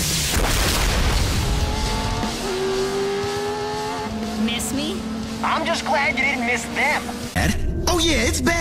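Cartoon action soundtrack: car engine noise under music with held tones, and voices coming in over the last couple of seconds.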